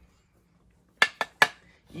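Three sharp clacks in quick succession about a second in, hard objects knocking together.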